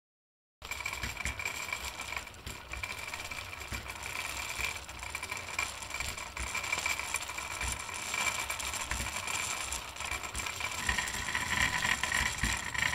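Wooden spinning wheel being treadled, its flyer and bobbin turning steadily as fiber is twisted into a single; the sound starts about half a second in.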